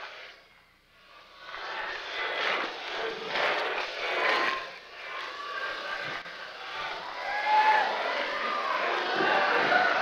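Convention-hall audience: many voices talking and calling out at once, swelling louder toward the end with a few whoops.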